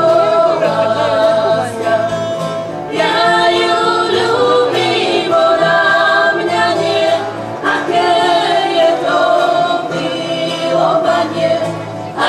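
A group of women singing a song together to several strummed acoustic guitars, in sung phrases a few seconds long.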